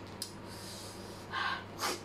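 A person taking two sharp breaths through the nose and mouth into a tissue, the loudest near the end, reacting to the heat of very spicy chilli noodles.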